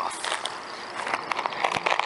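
Irregular crinkling and crackling of a plastic snack bag being pulled free from leafy tree branches, with rustling of the twigs and leaves.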